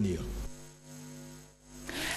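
Electrical mains hum: a steady low buzz in the broadcast audio between two stretches of speech, fading slightly before the next speaker begins.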